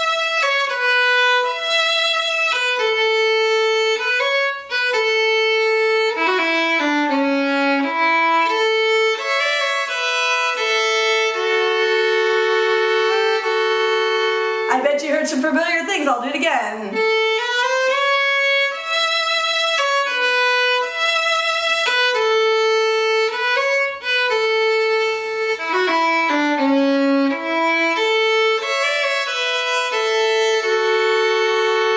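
Solo fiddle playing the second phrase of a New England waltz slowly, one sustained bowed note after another. About halfway through, a short wavering, falling sound breaks in before the notes carry on.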